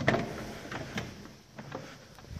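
Lamborghini Gallardo Spyder's door being opened: a sharp click of the latch at the start, then a few lighter knocks as the door swings.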